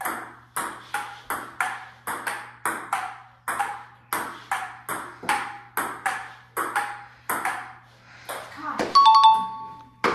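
A fast table-tennis rally: the ball clicking off the paddles and the Joola table top about three times a second for some seven seconds, with a few more hits after a short lull. Near the end, a short steady chime.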